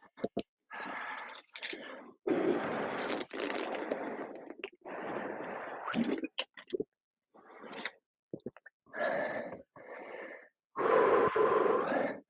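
A man breathing heavily, catching his breath after exertion: a series of long, noisy breaths in and out with short pauses between them.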